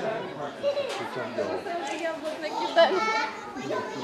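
Indistinct chatter of several people talking at once, with a high-pitched voice calling out about three seconds in.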